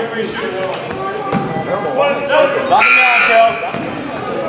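Basketball game sounds in a gym: players and spectators calling out, and a basketball bouncing on the hardwood court, with a single knock about a second and a half in. A short, high-pitched tone rings out briefly about three seconds in.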